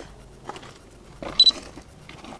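Faint handling clicks and rustles, with a short, sharp, loud sound carrying a thin high tone about one and a half seconds in.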